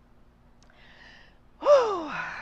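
A woman's faint in-breath, then a loud voiced sigh near the end whose pitch slides steeply downward, an emotional exhale while she speaks of her late brother.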